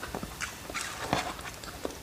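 Close-up eating sounds: soft food chewed with wet mouth clicks and smacks, coming irregularly, with a short cluster about a second in.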